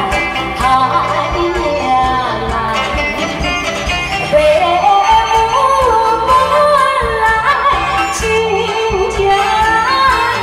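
A woman singing into a microphone over backing music, her melody gliding and held on long notes.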